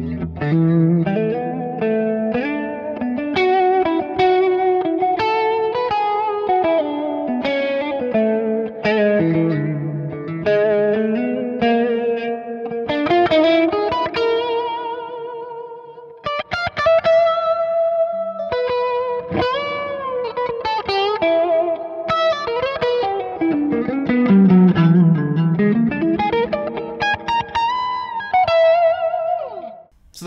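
Electric guitar played through a Valeton CH-10 analog chorus pedal: melodic single-note lines and bends with a wavering chorus shimmer. It dips briefly about halfway through and stops just before the end.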